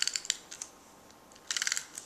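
Stampin' Up! Snail tape-runner adhesive being drawn along a paper strip, its mechanism giving short runs of rapid clicking: one at the start and another about a second and a half in.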